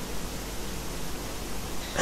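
Steady, even background hiss with no distinct sound events.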